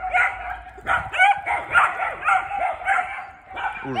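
A pack of dogs, one adult and three young ones, barking and yapping over each other in quick, irregular bursts: they are quarrelling with a strange laika that has come onto their ground and won't leave.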